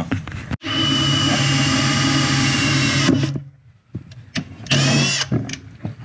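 Cordless drill with a combined drill-and-tap bit running into a steel enclosure panel, a steady run of about two and a half seconds. About five seconds in comes a second short burst that rises in pitch as the drill spins up.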